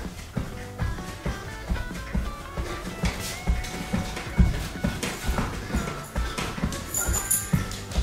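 Background music with a steady beat and a melody.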